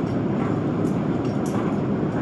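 Steady rushing of flowing water, echoing in a tunnel, with a few faint clinks.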